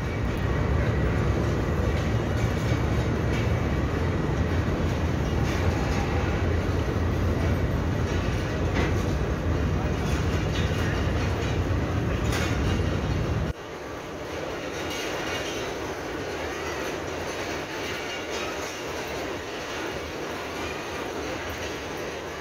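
Passenger coaches of an express train rolling past along a station platform, their wheels rumbling on the rails. About two-thirds of the way through, the heavy low rumble drops away suddenly and a lighter, steady rolling noise goes on.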